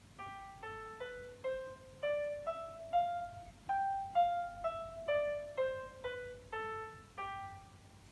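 Piano playback from MuseScore notation software, one note sounding as each is entered. About fifteen single notes at roughly two a second play a G melodic minor scale up an octave and back down, with E and F sharp on the way up and F and E flat on the way down.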